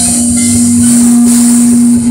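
Live Dixieland jazz band of saxophone, trombone, trumpet and clarinet, with one low note held steadily over the rhythm section.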